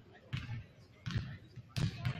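Basketball dribbled on a hardwood gym floor: three bounces, roughly two-thirds of a second apart.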